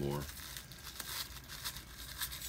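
Thin plastic wrapper crinkling and tearing as it is worked open by hand, with small crackles and one sharper click about a second in.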